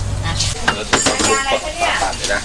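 Clinks and clatter of crockery and metal utensils as rice noodles are portioned into small bowls, a series of sharp clicks, some ringing briefly. A low hum stops about half a second in.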